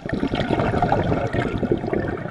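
Underwater bubbling and gurgling from a scuba diver's exhaled breath, recorded underwater. It starts suddenly and runs for about two seconds as a dense crackle of bubbles.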